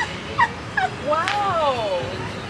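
A woman's high-pitched squealing: two short yelps, then a longer cry that rises and falls.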